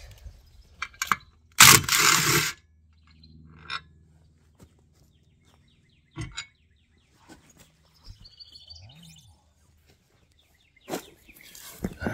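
Scattered clicks and knocks from a travel-trailer spare tire being handled and taken off its mount, with a loud noisy burst lasting about a second, about two seconds in. Birds chirp faintly in the background.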